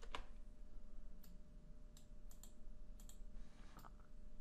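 Faint, irregular clicks of a computer mouse and keyboard while editing in a music program.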